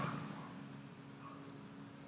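A quiet pause: faint background noise with a low steady hum and no distinct event.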